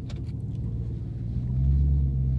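Dodge Challenger SRT Demon's supercharged V8 running at a low, steady drone, heard from inside the cabin while driving; it grows louder about a second and a half in.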